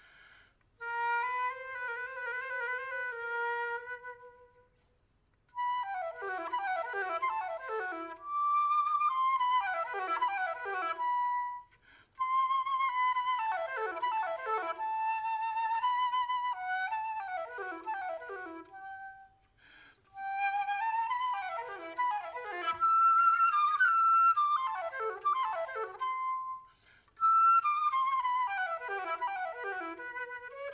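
Unaccompanied concert flute playing an etude in phrases broken by short pauses: held notes with vibrato alternating with quick falling runs.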